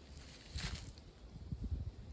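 Footsteps in dry leaf litter: a short rustle and crunch about half a second in, with soft low bumps of steps and phone handling.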